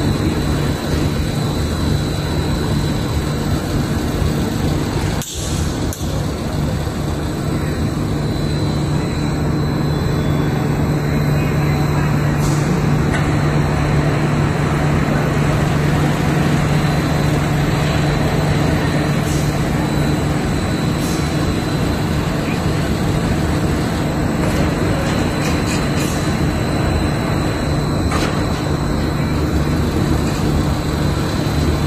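Bedding production-line machinery laying fibre wadding onto a conveyor, running steadily: a constant drone with a strong low hum and a faint high whine.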